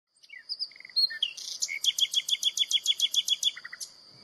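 Small songbird chirping: a few short high chirps, then a fast trill of evenly repeated notes, about nine a second, from about one and a half seconds in until near the end, over a steady high-pitched tone.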